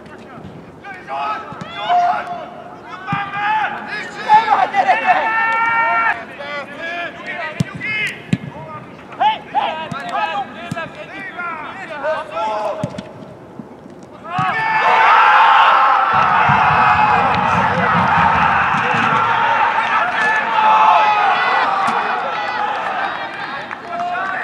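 Footballers shouting across the pitch, with a few sharp thuds of the ball being kicked. About 14 seconds in comes a sudden, sustained burst of loud cheering and yelling from many voices, a goal being celebrated.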